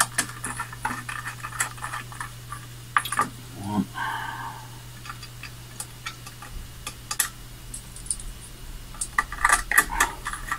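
Small metal screws and a hex key clicking and clinking as M4 screws are fitted by hand into the printer's aluminium base, with a rummage through a tray of loose screws near the end. Underneath runs a steady low hum.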